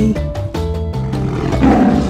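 Background music, with a lion roar sound effect over it in the second half.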